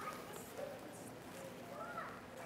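Quiet pause in a large room: faint room tone with a few faint, brief high-pitched sounds like a distant voice.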